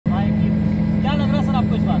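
Steady engine drone inside a small aircraft's passenger cabin, an even low hum that does not change, with a man's voice speaking over it.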